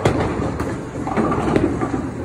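A bowling ball released onto the lane about a second in and rolling down it with a rumble.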